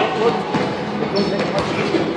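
Scattered knocks and thuds from two boxers sparring in a ring, over indistinct voices echoing in a large gym hall.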